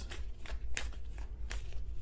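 Tarot cards being shuffled and handled, a soft papery riffling with two sharper card snaps less than a second apart in the middle.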